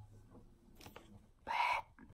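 Acoustic guitar's final strummed chord fading out, followed by near quiet and one short breathy burst about one and a half seconds in.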